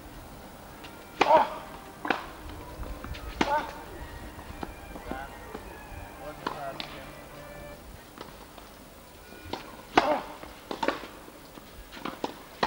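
Tennis ball rally: sharp pops of the ball on racket strings and on the court, each with a short ringing tone. Three hits come in the first few seconds and two more about ten seconds in.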